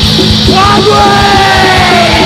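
Hardcore punk recording: distorted guitars and fast drumming, with a long yelled vocal held from about half a second in.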